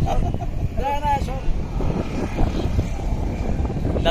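Steady low outdoor rumble, with a short burst of a man's voice, like a laugh, about a second in.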